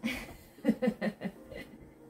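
A woman laughing: a sharp breathy burst, then a quick run of about five short 'ha' pulses.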